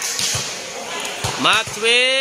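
Two short, dull thuds in the first second and a quarter, then a man commentating from about a second and a half in.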